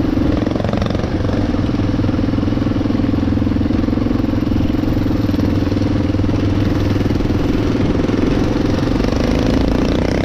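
Enduro motorcycle engine running steadily under way on a dirt track, heard from the rider's own bike, with a brief dip in engine note about a second in.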